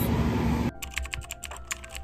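Loud outdoor street noise that cuts off suddenly less than a second in, followed by a quick run of keyboard typing clicks, about seven or eight a second, as a sound effect for text being typed out on screen.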